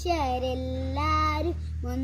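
A young girl singing solo in Malayalam without accompaniment, holding long notes that step up and down in pitch.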